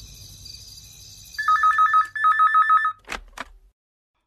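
Corded desk telephone ringing with a fast two-tone electronic warble, two rings about a second apart. The ringing stops and two clicks follow as the handset is picked up.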